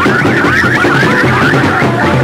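Band music with drums and a fast warbling high line that zig-zags in pitch several times a second.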